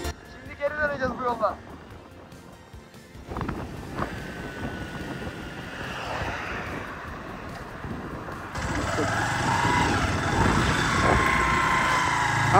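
Suzuki motorcycle on the move: a steady mix of engine and wind noise on the microphone, louder from about eight and a half seconds in. Short bits of voice come about a second in and again near nine seconds.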